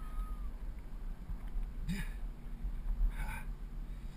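Wind buffeting a GoPro microphone as a bicycle rolls along a paved path, a steady low rumble. A few brief, higher-pitched squeaks or calls come through about two and three seconds in.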